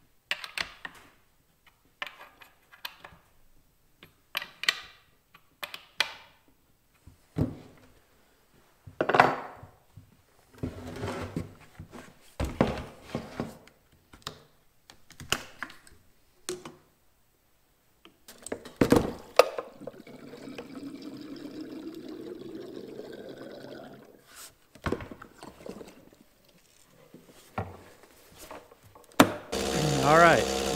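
Clunks, knocks and clicks of a Stihl MS 260 chainsaw's bar and chain being fitted back onto the saw on a wooden workbench after a new drive sprocket has gone in. Past the middle there are a few seconds of steady whirring that rises in pitch.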